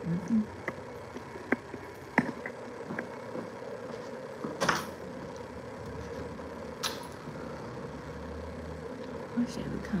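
Steady room hum with scattered clicks and knocks from a handheld phone and its grip being handled, and a low rumble that comes in near the end.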